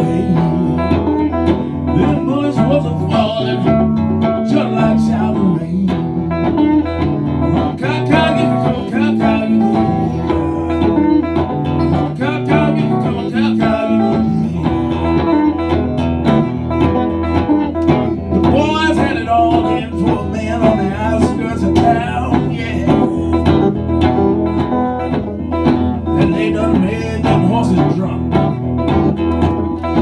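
Acoustic guitar played solo in a country-blues style: a steady, rhythmic picked pattern running continuously as an instrumental passage.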